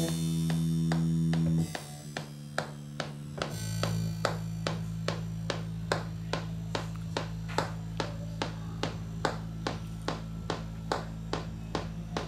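Congo techno electronic music played from a laptop and pad controller: a steady low bass drone under an even percussion pattern of about three hits a second. A loud sustained chord at the start cuts off suddenly just under two seconds in.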